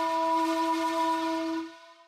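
A single held note with bright, reedy overtones, like a wind instrument or whistle, steady in pitch. It is an edited-in sound effect and fades out near the end.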